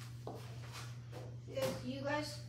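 A steady low hum with a few faint handling noises, then a person's voice starts speaking about one and a half seconds in.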